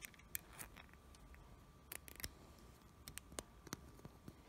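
Faint, scattered plastic clicks and taps from ballpoint pen parts being handled and fitted together, about seven small clicks over a few seconds against near silence.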